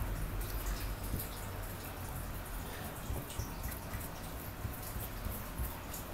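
Paintbrush dabbing wet Mod Podge onto torn book-page paper on a wooden board: faint, irregular soft wet taps and brushing over a low steady hum.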